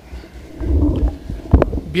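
Handling noise on a table microphone: a low rumble, then a sharp thump about one and a half seconds in as the microphone is knocked or moved.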